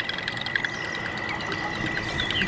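Birds chirping in short, scattered calls over a steady, thin, high-pitched whine.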